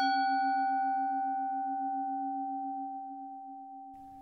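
A metallic chime, struck once, rings on and slowly fades: a low tone with a slow pulse and a clearer higher tone, while its upper overtones die away in the first second or two.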